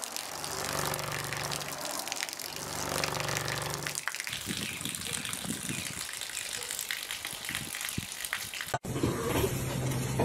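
A stream of water pouring steadily from a clear tube. For the first four seconds a low hum from the speaker shaking the tube plays under it, then stops. The tube is vibrated in step with the camera's frame rate so the stream appears frozen in a spiral.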